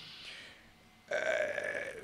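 A man's long, drawn-out hesitation "uh", held on one steady pitch, starting about halfway through after a brief moment of near silence.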